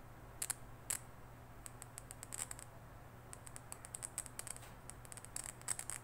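Crackling from a dynamic microphone's voice coil as test leads touch its terminals: two separate clicks in the first second, then a rapid, irregular run of clicks. The crackle shows the voice coil is still intact.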